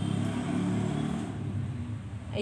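An engine running in the background, a low pitched hum that swells about half a second in and eases off again, as of a passing motor vehicle.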